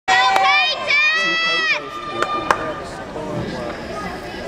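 Two long, high-pitched shouted calls in girls' voices, cheering on a gymnast, held almost level in pitch for most of a second each. After them comes arena chatter, with two sharp knocks about two and a half seconds in.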